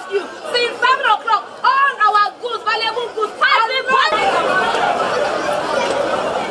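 A single voice speaking in short, rapid phrases for about four seconds, then a sudden cut to a steady background of crowd chatter.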